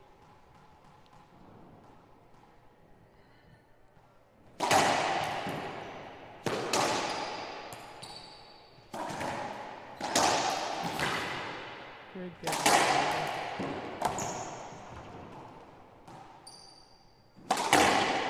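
Racquetball rally in an enclosed court: loud cracks of the ball struck by the racquets and slamming off the walls, each ringing with a long echo. The hits start about four and a half seconds in and come about seven times, one to two and a half seconds apart.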